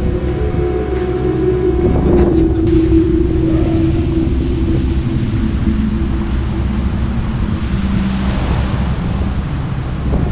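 Wind buffeting the microphone beside the sea, with surf washing in the background. Through it runs a steady humming tone that drops lower about six seconds in.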